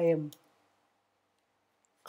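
The end of a spoken word, with a few light clicks of a laptop keyboard, then near silence and one faint key click near the end: the Enter key running the typed Terminal command.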